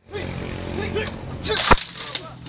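A single sharp, whip-like crack of a punch landing in a staged fight, coming just after a brief swish about three-quarters of the way through, over voices.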